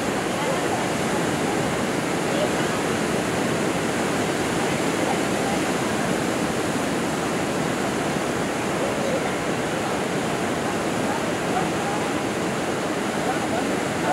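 Steady wash of small waves breaking on a sandy shore, with faint distant voices underneath.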